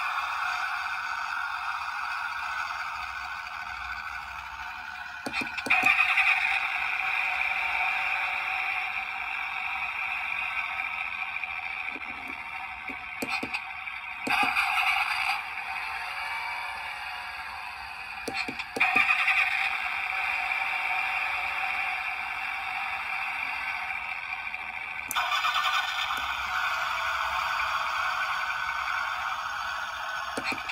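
Capsule-toy engine start buttons playing recorded car engine cranking and running sounds through a tiny, tinny speaker. Several times a plastic button click sets off a new, louder start sound: about five seconds in, again around 13 to 14 seconds, near 19 seconds and near 25 seconds.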